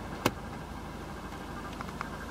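A single sharp click of a dashboard climate-control button being pressed, with a couple of fainter clicks near the end, over the steady low hum of the Golf TDI's diesel engine idling, heard from inside the cabin.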